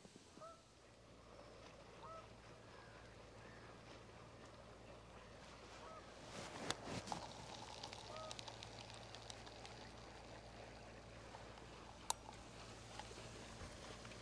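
Faint bird calls: four or five short single calls a couple of seconds apart, over a quiet outdoor background with a steady low hum. There is a brief rustle about seven seconds in and a single sharp click near the end.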